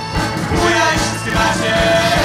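Live rock band playing a song, with a steady drum beat under electric guitar and melody lines.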